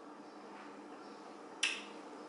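Quiet room tone with a faint steady low hum, broken by one sharp click about one and a half seconds in.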